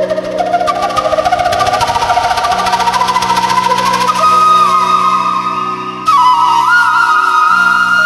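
Bansuri (bamboo transverse flute) playing a melody over accompaniment with a steady low drone. The melody climbs through the first few seconds, then about six seconds in jumps to held high notes ornamented with bends and slides.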